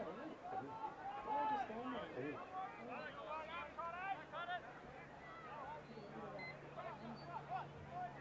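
Faint, indistinct voices of players and spectators calling and shouting across the ground, no words clear. A faint steady low hum comes in about halfway through.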